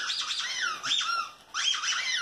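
Squeaker inside a plush dog toy squeezed by hand, giving high squeaks that slide in pitch, in two squeezes with a short gap about one and a half seconds in.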